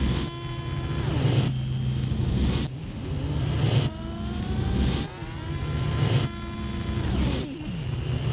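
Experimental industrial electronic music from cassette: a dense low hum under stacked tones, in repeating sections about a second long, with tones that glide down and up.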